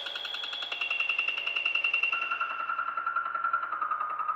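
Electronic music from a DJ mix: a fast, stuttering synth pulse whose pitch steps down twice.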